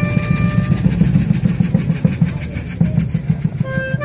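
Small brass-and-drum band: a drum and other percussion playing a fast, steady beat on their own after a held wind-instrument note ends about a second in; the wind melody comes back in near the end.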